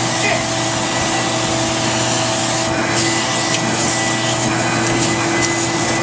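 Vacuum cleaner running steadily through its hose and crevice-tool wand: a constant rushing drone with a steady whine.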